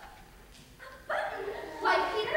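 A young actor's high-pitched voice calls out a line on stage, starting loudly about a second in after a quiet pause.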